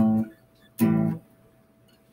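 Acoustic guitar playing the dominant seven-sharp-nine chord: two short, clipped strummed chords a little under a second apart.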